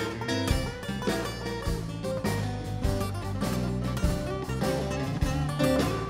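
Two acoustic guitars playing blues together in an instrumental passage without vocals, a busy run of picked notes.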